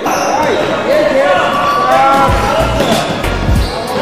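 Sounds of a children's basketball game in a large hall: a basketball bouncing on the floor, with sharp knocks and heavy low thuds in the second half, amid children's voices.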